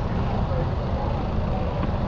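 Busy street ambience: a steady low rumble of traffic mixed with indistinct voices of people close by.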